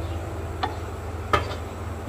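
A spatula stirring boiling sour-spicy broth in a stone-coated wok over a steady low hum, with two light knocks, one about half a second in and a louder one about a second and a half in.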